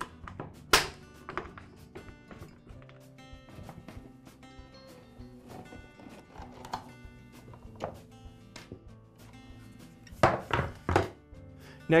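Screws being backed out of a Troy-Bilt backpack blower's plastic housing with a screwdriver: faint ticks and clicks, a sharp knock about a second in, and a cluster of louder plastic knocks near the end as the housing half comes off. Background music plays throughout.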